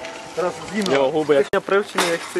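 A voice talking over the crinkling rattle of a plastic crisp packet being handled, with a sharp click about a second and a half in.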